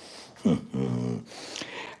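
A man's voice holding a short wordless hesitation sound, about two-thirds of a second long, starting about half a second in.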